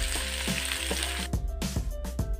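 Sliced shallots, garlic and tomato sizzling in hot oil in a frying pan as they are stirred; the sizzle cuts off suddenly about a second in. Background music with a steady beat plays throughout.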